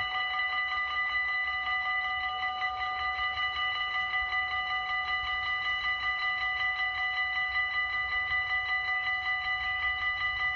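Railway level-crossing warning bell ringing with a fast, even beat, its several clear bell tones held steady throughout.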